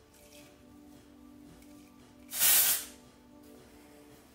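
A single short hiss of an aerosol texturizing hair spray, about half a second long, about two and a half seconds in, over background music.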